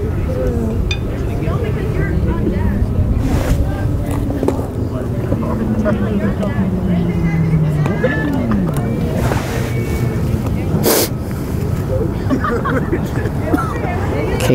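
Voices of players and spectators calling and chattering across a softball field, over a steady low wind rumble on the microphone; one voice holds a long call that falls in pitch midway. A single sharp knock sounds about eleven seconds in.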